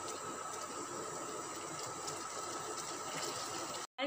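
Pan of thick cheese white sauce simmering on the stove: a steady low hiss and bubbling as it is stirred with a silicone spatula. The sound breaks off abruptly just before the end.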